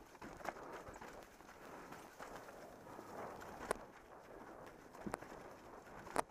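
Mountain bike rolling fast down a rough dirt trail: a continuous crunch and rumble of tyres on dirt, with a few sharp knocks and rattles as the bike hits bumps.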